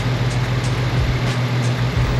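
Audi B5 S4's 2.7-litre twin-turbo V6 idling steadily while it warms up.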